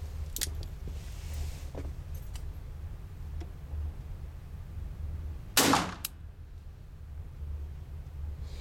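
A single .22 caliber gunshot about five and a half seconds in: one sharp crack with a short ring-off, followed a moment later by a faint click. A few faint clicks come before it, over a steady low hum.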